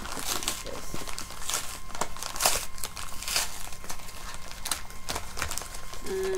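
A padded mailing envelope crinkling and rustling in the hands as it is being opened, with irregular sharp crackles throughout.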